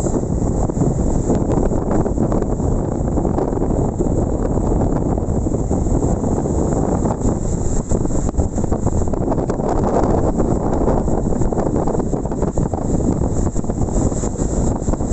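Strong wind buffeting the microphone over rough surf breaking and washing up the shore, a steady dense rumble with no let-up; the noise swells briefly about ten seconds in.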